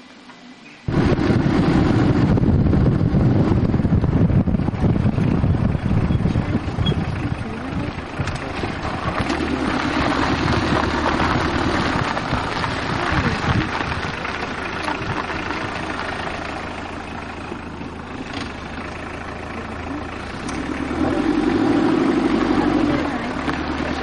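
A car driving, heard from inside through a camcorder microphone: steady loud road and engine noise with wind buffeting, starting suddenly about a second in and swelling louder three times.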